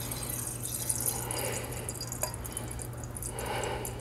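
Stout draining from a beer thief into a wine glass: a quiet, steady trickle and splash of liquid, with one small tick about two seconds in.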